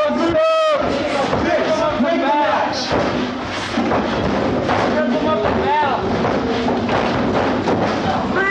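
Several men shouting over one another during a scuffle, with one loud shout about half a second in, and scattered thuds.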